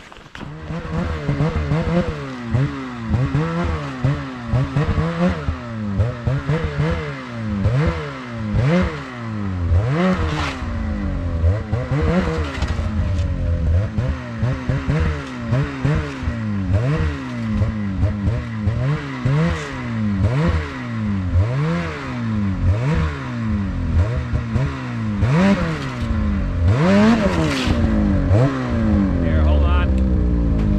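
Snowmobile engine revved again and again, the pitch climbing and falling about once every second or so, as the sled is worked through crusty snow. It gets louder near the end as the sled comes up close.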